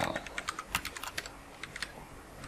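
Computer keyboard keys clicking in quick, irregular keystrokes as shortcut combinations are pressed, thickest in the first second and thinning out after.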